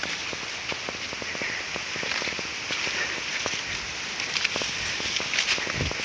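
Rustling and crackling from a handheld camera being carried along: many small irregular crackles over a steady hiss.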